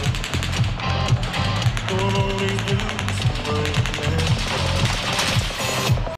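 Rapid, evenly paced automatic gunfire, one gun in a steady rhythmic string of shots, recorded on a phone in the crowd over a live country band still playing.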